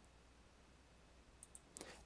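Near silence: room tone, with a faint computer mouse click or two near the end.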